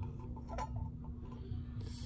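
Quiet workshop room tone: a steady low hum, with faint light rubbing and a tick from a pen moving over the face of the degree wheel.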